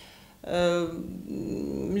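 A person's hesitating voice between sentences: a drawn-out filler vowel about half a second in, trailing into a lower, creaky hum before the next words.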